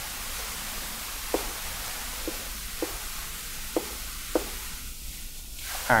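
Dry-erase marker writing on a whiteboard: a handful of short, separate squeaks of the marker tip over a steady hiss of room noise.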